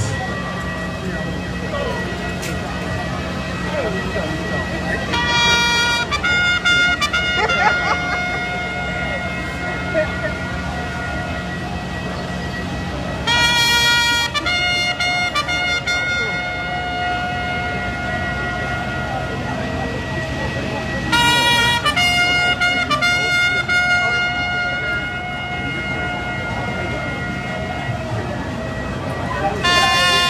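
A steady low mechanical drone with a thin steady whistle over it, broken by four loud horn-like blasts of one to two seconds each, about eight seconds apart.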